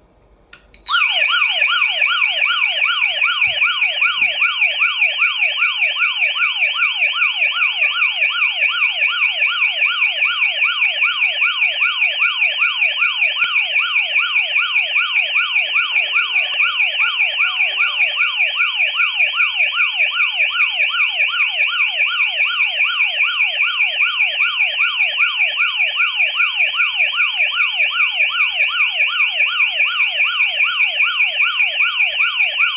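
HOMSECUR H700 burglar alarm siren going off after a motion sensor is triggered with the system armed. It starts abruptly about a second in and keeps up a loud, fast, repeating wail of quickly falling pitch sweeps.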